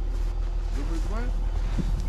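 Off-road SUV engine running steadily, a low even rumble with a faint hum, with a faint distant voice about a second in.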